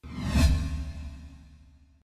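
A whoosh sound effect with a deep rumble under it, starting suddenly, swelling to its loudest about half a second in, then fading away: the audio sting of a TV channel's logo ident.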